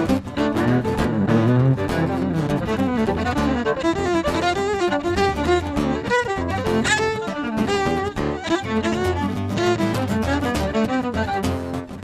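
Live acoustic duo playing an instrumental passage: fiddle bowing quick melodic lines over acoustic guitar accompaniment.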